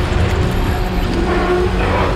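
Film sound effect of a tentacled creature in a closet, a loud low rumbling roar with a couple of held tones in it.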